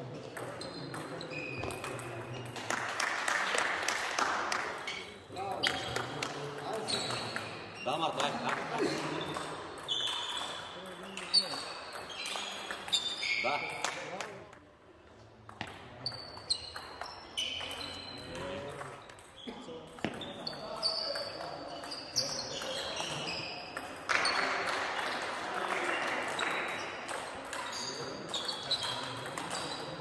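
Table tennis rallies: a celluloid-type plastic ball clicking off rackets and the table in quick series, with pauses between points.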